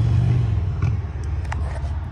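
Low, steady rumble of a car engine idling, with a couple of faint clicks.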